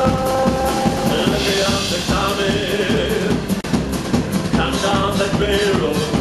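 Live country band playing on a miked stage, a drum kit keeping a steady beat under held voices and instruments.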